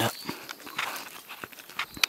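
Footsteps on dry leaf litter across a forest floor, several steps at an uneven pace.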